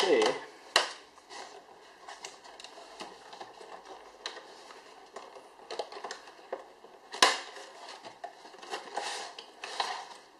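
Cardboard packaging being handled and opened: the box flap pulled open and the inner sleeve and clear plastic tray slid out, with irregular scraping, rubbing and clicking of paperboard and plastic, and one sharp snap a little after seven seconds.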